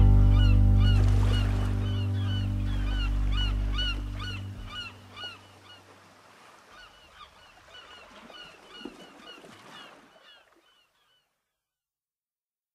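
The song's final chord rings out and fades over the first few seconds, while birds call over and over, a few short hooked calls a second, dying away by about ten seconds in.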